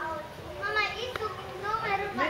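Children's voices talking in the background, high-pitched and overlapping.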